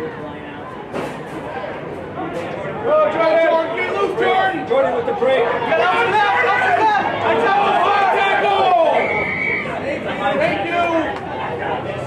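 Several voices shouting over one another, swelling from about three seconds in and easing off near nine seconds, as a player makes a break with the ball.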